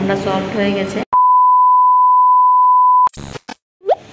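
A steady single-pitch electronic beep lasting about two seconds, followed by a few brief clicks and a short rising chirp.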